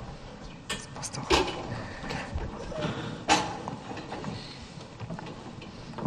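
Tall stools being carried and set down on a stage floor: several knocks and scrapes, the loudest a little past three seconds in.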